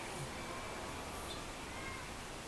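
Small pug-type dog whining: faint, thin, high whines, one about half a second in and another near the end.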